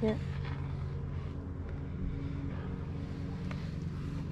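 A steady low hum with a few fixed, unchanging tones, like a motor running in the background, under a brief spoken word at the start.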